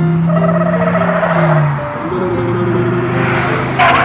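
Toy truck engine sound effect: a steady hum that drops in pitch about halfway through, over background music.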